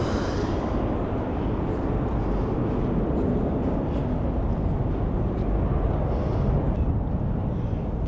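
Wind buffeting the microphone: a steady, low rumbling noise with no distinct event in it.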